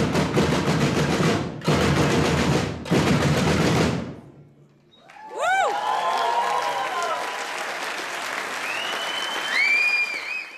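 Audience applauding, the applause cut off abruptly twice in the first couple of seconds. Then there is a brief near-silent gap about four seconds in. After it, fainter applause returns with whistles that glide up and down, and later hold steady high notes.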